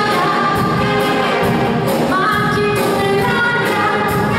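A woman singing a pop song through a microphone and PA, holding long notes that slide up in pitch, backed by a concert wind band with a steady beat.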